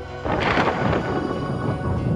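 Thunder-like crash sound effect starting suddenly about a quarter second in, then a low rumble that carries on under dramatic music.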